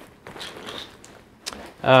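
Nylon backpack fabric rustling as the pack's top compartment lid is pulled open, with a single small click about one and a half seconds in.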